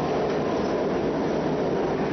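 Subway train running, heard from inside the carriage: a steady, even noise of the moving car, mostly low in pitch.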